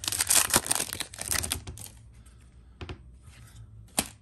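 Foil trading-card pack wrapper crinkling and tearing as it is ripped open, dense and loud for about the first two seconds. Then it goes quieter, with a few faint clicks and one sharp click at the end.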